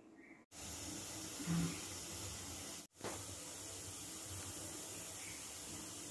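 Steady hiss of steam escaping from a steamer pot while rice-flour dumplings steam, with a brief low sound about a second and a half in.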